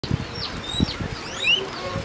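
A group of guinea pigs making short, high squeaks that glide up and down in pitch, overlapping, as they crowd round to be fed, with a few low thumps early on.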